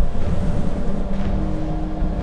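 Low rumbling drone from the soundtrack, with a steady held note in the second half.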